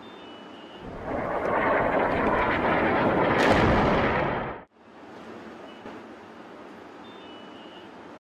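Bomb explosion in a town: a loud rumbling roar that builds from about a second in, with a sharp crack near its peak, then cuts off suddenly. A steady hiss lies underneath before and after it.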